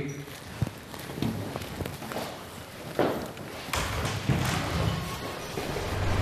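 Scattered footsteps and light thumps on a hard floor.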